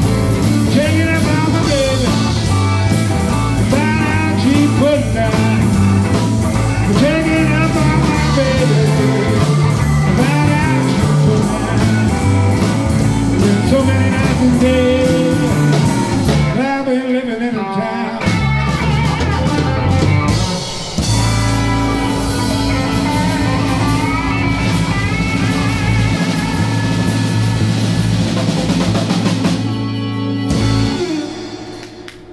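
Live blues band playing: electric guitar, bass, keyboard and drums. The low end drops out briefly about 17 seconds in. Over the last third, long held chords ring under the playing.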